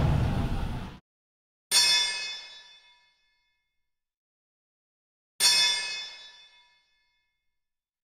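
Two sudden metallic ringing hits, a dramatic sound effect in a film's soundtrack. They come about four seconds apart, each a bright, high ding that dies away over about a second, with dead silence between.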